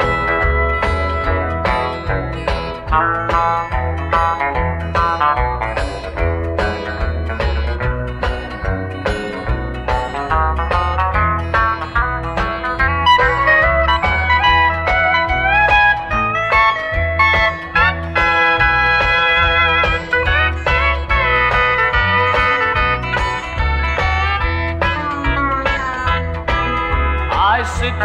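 Instrumental break of a country song: a steel guitar plays the lead with gliding notes over a steady bass beat. The singer comes back in right at the end.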